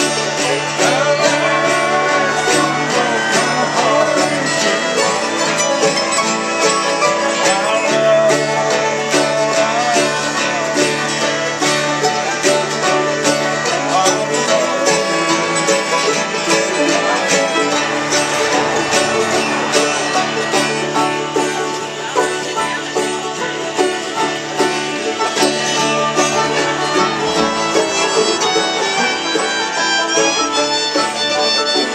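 Acoustic bluegrass jam: a mandolin picking and an acoustic guitar strumming a steady rhythm, with a fiddle playing along.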